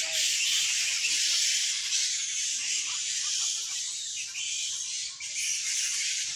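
Dense, steady high-pitched chorus from the tree canopy, typical of cicadas or other insects, with no distinct calls standing out. It dips slightly in level about five seconds in.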